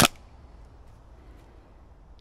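Single shot from a Tokyo Marui MP5SD NGRS electric airsoft gun fired through a chronograph: one short, sharp crack right at the start, then only faint background.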